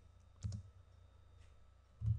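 A short computer mouse click about half a second in, with a fainter tick a second later, against near-quiet room tone.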